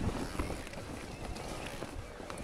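Electric mountain bike ridden over a rough forest trail: tyres running over dirt, stones and roots with dull knocks and rattles from the bike, a heavier jolt right at the start, under a steady noisy rush of wind on the microphone.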